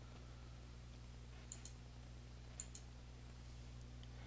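Near silence over a low steady hum, with faint computer mouse clicks: a pair about a second and a half in and another just before three seconds in.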